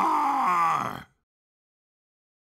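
A class of cartoon children cheering together, their drawn-out shout falling in pitch and cutting off suddenly about a second in.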